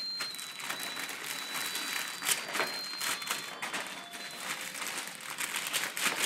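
Gift wrapping paper being torn and crinkled by a toddler unwrapping a present, in irregular rustles with a few sharper rips.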